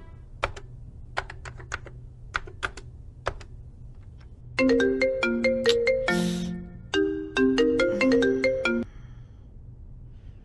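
Laptop keys clicking in sparse, irregular taps, then a mobile phone ringtone plays a short stepping tune twice, starting about halfway through, with a brief hiss between the two phrases.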